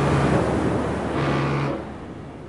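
Rushing surf and water noise with a low steady drone underneath, swelling twice and then fading away near the end.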